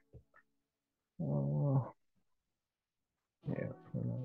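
A man's voice giving a short wordless hum, a little over a second in, and voicing again near the end, with quiet gaps between.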